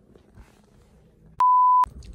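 A single censor bleep: a steady, pure, mid-pitched beep about half a second long, a little past halfway, with all other sound cut out while it plays. Before it, only faint room sound.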